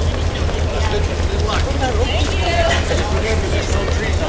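Chatter of runners talking as they pass in a crowd, over a steady low rumble.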